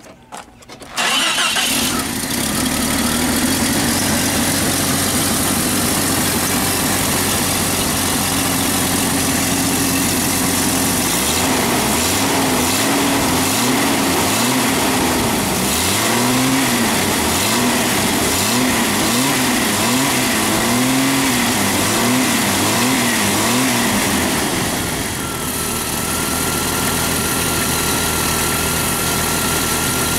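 Jeep 4.0-litre straight-six catching about a second in and running just after a tune-up with new plugs, wires and distributor cap, which the owner finds sounds a little better. From about 11 s to 24 s the engine speed rises and falls over and over, about once a second, then settles to a steady idle.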